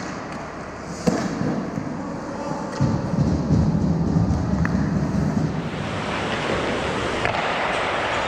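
Ice hockey play heard from right behind the goal: a sharp crack about a second in, a louder rumble of movement close by in the middle, then the hiss of skate blades scraping the ice.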